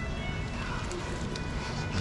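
Hand squishing and mixing wet pholourie batter in a stainless steel bowl: a soft, steady wet squelching with faint clicks.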